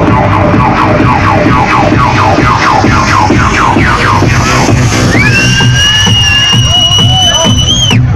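Techno played loud over a club sound system: a steady thumping beat under a repeating pattern of short synth notes. About five seconds in, a high, siren-like held tone comes in over the beat and breaks off suddenly just before the end.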